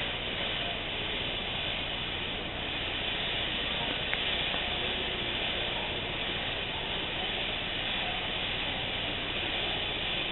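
Steady hiss of background noise at an even level, with one faint click about four seconds in.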